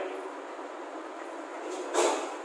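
Chalk scraping on a blackboard as a line is drawn: a steady scratchy rasp, with a louder, sharper stroke near the end.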